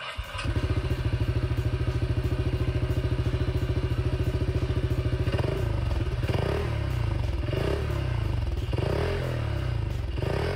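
Honda ADV160 scooter's single-cylinder engine running through a Burial Nexus RS NT aftermarket exhaust, a plain, steady fast pulse at idle. About five seconds in the beat turns less even, with a few short rises in engine speed.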